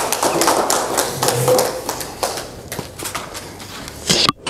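Audience applauding, a dense patter of claps that thins out and fades over the last second or so.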